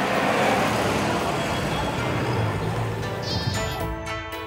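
A UAZ-452 van driving past on an asphalt road, its engine and tyre noise swelling in the first second, with sheep bleating. Music comes in near the end.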